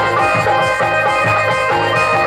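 Instrumental interlude of a live Santali song: a bright electronic keyboard melody over a drum beat, with no singing.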